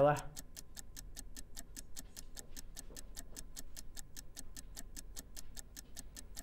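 Countdown clock sound effect ticking quickly and evenly, about five ticks a second, marking the timer running down to the next price drop.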